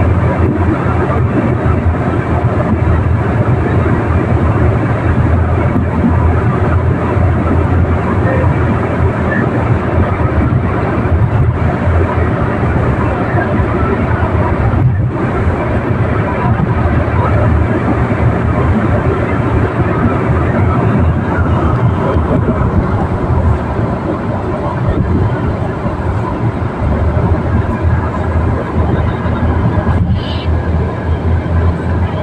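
Steady road and engine noise inside a car cruising at highway speed: a low rumble with tyre and wind noise.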